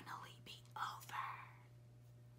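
A woman whispering a few words in the first second or so, then quiet room tone with a faint steady hum.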